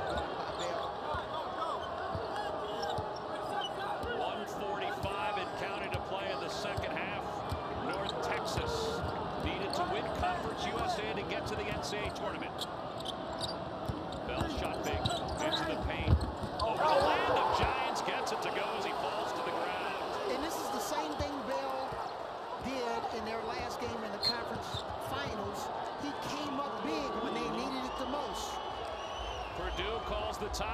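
Basketball game sound on a hardwood court in a sparsely filled arena: a ball dribbling, sneakers squeaking, and players and benches calling out. About sixteen seconds in comes a sharp thud, then a burst of shouting and cheering as a basket is scored.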